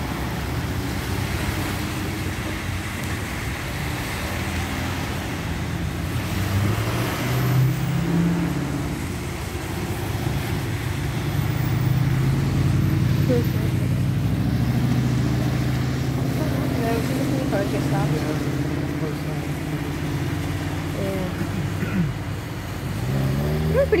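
Road traffic crossing the tracks on a wet road: car and pickup engines with tyre hiss on the wet pavement, swelling and fading as vehicles pass.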